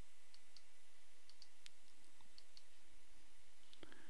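Light computer mouse clicks, a few faint scattered ones and a sharper one near the end, over a steady low hum.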